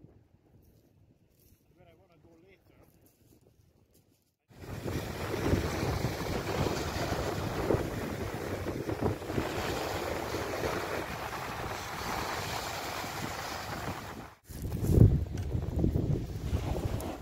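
Wind buffeting the microphone over waves breaking on a shingle shore. It starts suddenly a few seconds in after near silence and cuts off shortly before the end. A couple of loud handling knocks follow.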